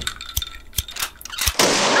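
Title-sequence sound effects: a few sharp cracks, the loudest about one and a half seconds in, followed by a loud hiss.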